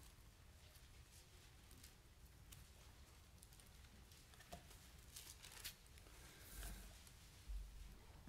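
Near silence with faint, scattered paper rustles and small clicks as the pages of a Bible are turned.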